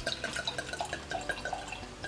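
Red wine glugging out of the neck of a glass bottle into a stemmed wine glass: a quick, even run of gurgles, about eight a second, that eases off near the end as the pour stops.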